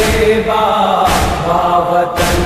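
Noha lament: male voices holding a wordless chanted line in chorus, over a sharp beat about once a second, the matam (chest-beating) rhythm of a noha.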